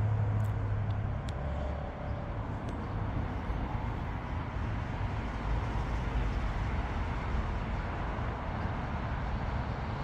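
Steady low rumble of distant engine noise, even throughout with no passing peak.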